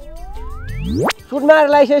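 A cartoon-style comedy sound effect: one tone glides steeply upward in pitch and grows louder for about a second, then cuts off suddenly. A short burst of speech follows.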